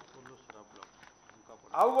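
A pause in a man's speech, filled by faint background hum and a few faint clicks, before he starts speaking again loudly near the end.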